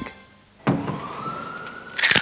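A siren-like tone starts suddenly about two-thirds of a second in and rises slowly and steadily in pitch over a faint noisy bed.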